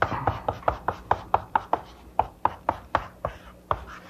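Chalk writing capital letters on a blackboard: a quick run of sharp chalk taps and short strokes, about five a second.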